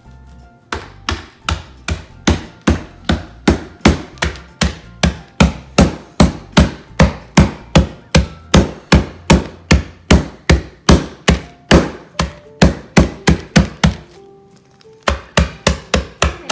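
Meat-tenderizer mallet pounding chocolate wafers in a zip-top plastic bag on a countertop, crushing them: quick, even strikes about three a second, a pause of about a second near the end, then a few more strikes.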